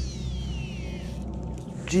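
Shimano SLX baitcasting reel's spool spinning freely as the line pays out on a long cast: a high whine that falls steadily in pitch as the spool slows, fading out about a second in.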